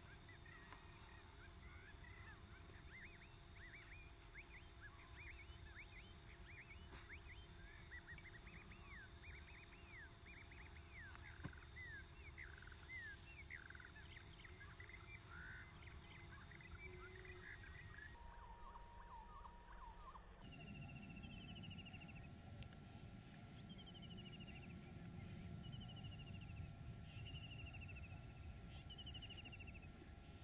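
Faint outdoor ambience with many birds chirping. After a change in recording about 18 seconds in, a single bird repeats a short falling call roughly every second and a half over a low, steady rumble.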